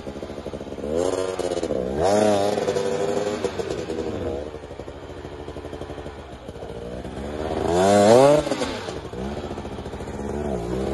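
Husqvarna 300 two-stroke enduro motorcycle engine revving in bursts on a rough, overgrown trail, its pitch rising and falling with each stab of the throttle. The strongest surge comes about eight seconds in.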